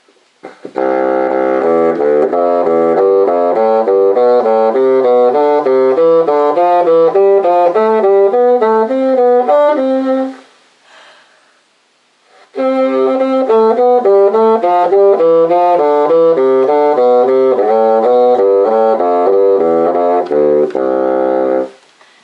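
Bassoon playing a warm-up scale exercise in thirds and fourths in groups of four quick notes. It plays as two long runs of about ten seconds each, with a short pause for breath about halfway.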